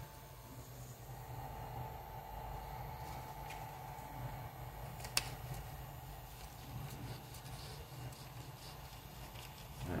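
Steady hum of a powered-on Ender 3 3D printer's cooling fans running while it sits preheated, with light handling noise and one sharp click about halfway through.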